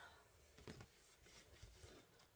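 Near silence with a few faint scrapes and taps of a pencil and paper being handled.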